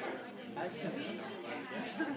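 Conversational chatter of several people talking at once, overlapping voices of a small social gathering.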